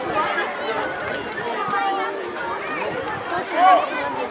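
Many overlapping voices calling and shouting, mostly high children's voices, with one louder shout near the end.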